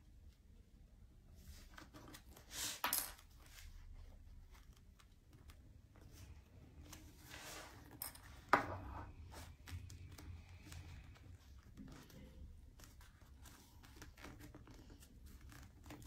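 Faint rustling of cotton fabric being handled and folded, as the bias binding is worked over the edge of a patchwork wallet. A few louder rustles come through, with one sharp tap about halfway.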